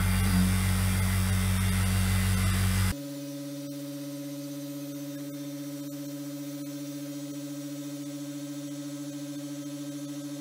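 Pfeiffer rotary vane vacuum pump switched on and running loudly while it pulls the air out of a sealed glass flange. About three seconds in it drops suddenly to a quieter steady hum, running near its base pressure of about 0.05 mbar.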